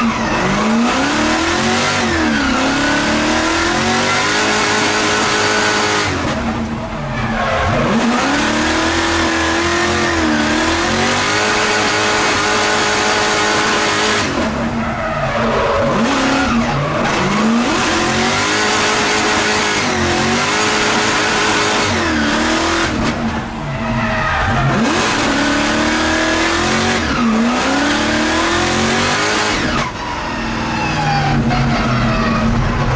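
LS V8 engine of an LSX-swapped Nissan drift car heard from inside the cabin, revving up and down hard through a drift run, with tyres squealing. The revs drop off sharply twice, about a quarter of the way in and again past three quarters, then climb back.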